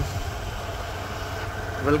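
A vehicle engine idling: a low, steady rumble.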